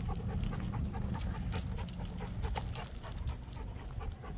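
Cane Corso panting while walking, with light scattered crunches of footsteps on gravel.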